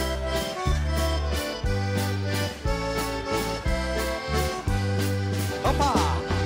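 Live dance band playing an instrumental passage of a folk waltz, led by accordion over keyboard bass and drums keeping a steady beat in three.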